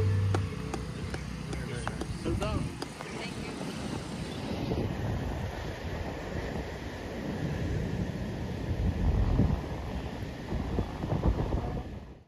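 The last low note of a bluegrass band rings briefly and stops within the first half second. After that, wind buffets the microphone as a gusty low rumble, with a few faint voices.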